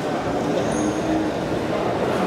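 A steady, fairly loud background din of the show-ring ambience with no distinct event, a faint held tone showing briefly about a second in.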